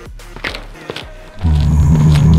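Cartoon background music with a couple of light knocks, then about one and a half seconds in a loud, deep animal roar sound effect begins, going with the caged gorillas.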